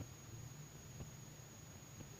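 Faint room tone: a low steady hum with a single faint click about a second in.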